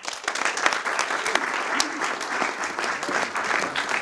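Audience applauding: many people clapping at once, starting suddenly and holding steady.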